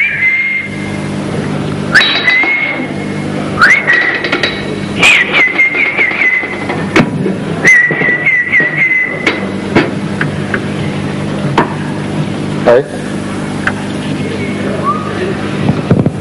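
Whistling: about five short high whistled phrases held near one pitch, the longer ones breaking into quick warbling trills, over a steady low hum.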